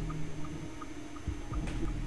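Quiet room tone with a faint steady low hum, and a few faint soft clicks in the second half.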